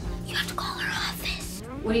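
A person whispering over soft background music, with ordinary speech starting near the end.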